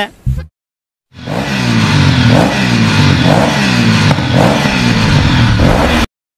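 Motorcycle engine revved over and over, about once a second, each rev falling away in pitch, starting after a short silence about a second in.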